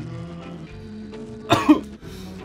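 A man coughing from harsh bong smoke: a short double cough about one and a half seconds in, over steady background music.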